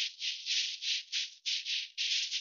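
Dry, hissing rattling in short, slightly uneven pulses, about three a second.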